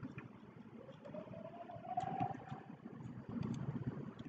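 A few faint computer mouse clicks over low background hiss, the clearest about two seconds in, with a faint tone rising slowly in pitch through the middle.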